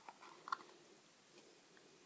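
Snap-on plastic lid being pulled off a small plastic tub: two faint clicks in the first half second, the second a little louder, then near silence.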